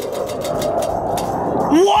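A spinning prize wheel's pointer clicking against its pegs in a fast run of ticks that spread out as the wheel slows to a stop. A voice comes in at the very end.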